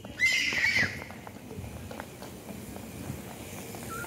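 A young child's high-pitched squeal, held for under a second near the start, then faint light running footsteps on paving stones.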